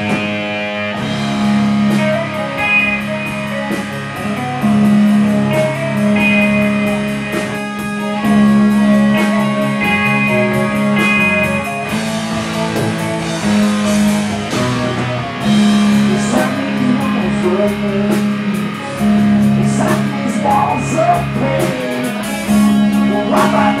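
Live rock band playing: electric guitars and bass holding long low notes that change every second or two, with drums keeping a steady beat.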